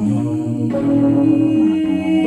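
Music: held chords that change twice, with no singing.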